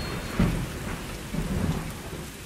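Thunderstorm sound effect: steady rain with rolling thunder, a rumble swelling about half a second in.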